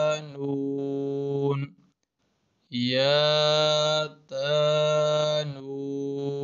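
Man reciting Arabic letter names in long, drawn-out, chant-like syllables, each held steady for about a second, with a short silence about two seconds in.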